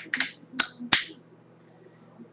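An empty aluminium drink can being crushed by hand, its thin metal giving four sharp crinkling cracks within about a second.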